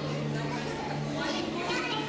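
Children's voices and indistinct chatter, louder in the second second, over a steady low hum.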